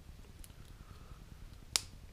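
A small stick snapped by hand: one sharp crack near the end, with a fainter click about half a second in.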